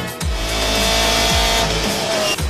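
Rock music mixed with the on-board sound of a sports-prototype race car's engine running at high revs at speed.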